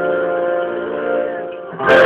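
Piano and guitar playing a slow rock ballad. Held chords fade down to a brief dip, then a louder chord comes in just before the end.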